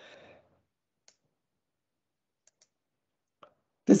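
A few faint computer mouse clicks, two of them close together, in near silence.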